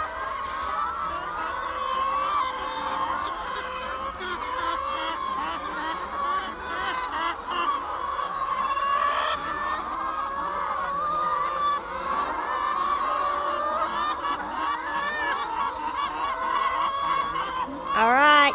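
A large flock of hens clucking and calling all at once, a steady chorus of many overlapping voices.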